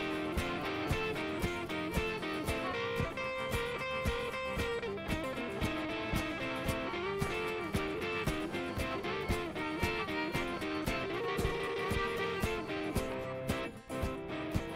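Instrumental break of a folk-roots song: an acoustic guitar and an archtop guitar play a picked, strummed part together over a steady beat of sharp knocks.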